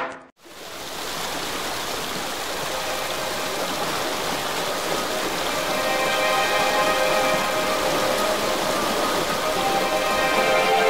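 A drum hit right at the start, then a steady sound of falling water, like heavy rain, that slowly grows louder. Sustained musical chords fade in over the water about halfway through.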